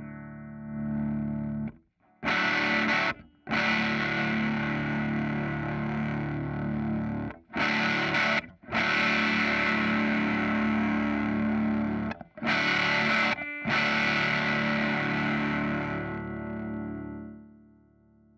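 Overdriven electric guitar chords played through a Fender 5F1 Champ-clone tube amp. Each chord rings and is then cut short before the next is struck, with three pairs of quick stops; the last chord rings out and fades near the end.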